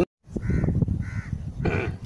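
A crow cawing repeatedly, about one call every half second, over a low background rumble.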